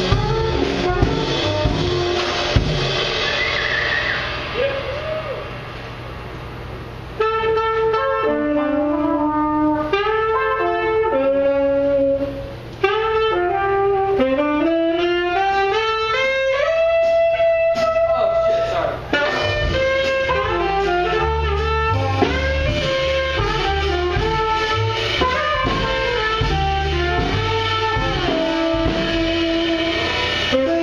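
Live jazz combo playing: trumpet and saxophone, upright double bass and drum kit. After a quieter stretch, the horns carry stepping melodic lines over a thin low end from about seven seconds in, and the bass and drums come back in full at about nineteen seconds.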